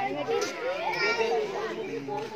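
Several voices of children and adults talking and calling out over one another.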